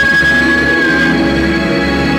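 Female vocal holding one long high note over a karaoke backing track through a PA, the note fading out about a second in while the accompaniment carries on.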